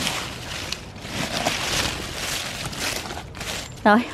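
Strawberry plant leaves rustling and brushing as a hand pushes through them, an uneven rustle that swells and fades.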